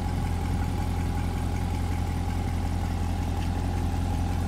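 Chevrolet Corvette C8's 6.2-litre LT2 V8 idling steadily, heard from behind the car at its quad exhaust tips.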